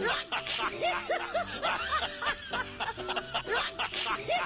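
Light, repeated laughter and snickering, with background music running under it.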